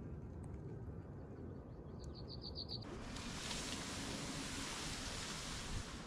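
Outdoor ambience with a low wind rumble on the microphone. About two seconds in, a small bird gives a quick run of about six high chirps. Just before three seconds a steady broad hiss starts abruptly and carries on to the end.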